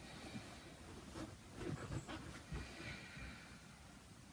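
Faint breathing with soft rustles and light knocks of a person shifting her hands, knees and feet on a yoga mat as she lifts into downward-facing dog.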